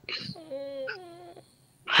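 A person's short, drawn-out whimper of pain or sympathy, about a second long with a wavering pitch, just after a quick breath.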